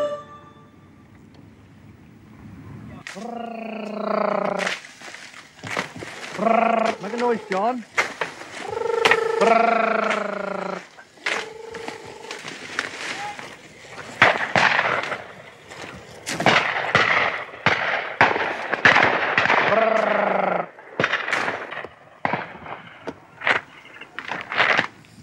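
Beaters calling out in long, drawn-out wordless shouts as they push through cover, over the crackle and snap of dry stalks being trampled and brushed aside. The calls come from about three seconds in and again in the second half, while the crackling grows denser toward the end.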